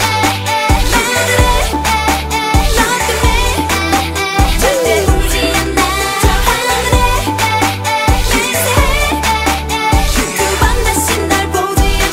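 K-pop dance-pop song playing, with a heavy, pulsing synth bass and a steady beat under layered synths.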